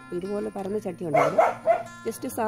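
A person talking over faint background music, with a louder, pitched burst of sound about a second in.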